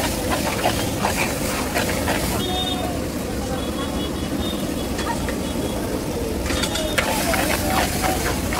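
Metal spatula scraping and knocking around a large wok as vegetable masala sizzles in it, the strokes coming in the first two seconds and again near the end, over a steady low rumble. Voices murmur in the background.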